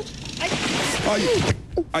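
A person plunging into deep, fast floodwater: a loud splash and churning of water lasting about a second, with short startled cries over it.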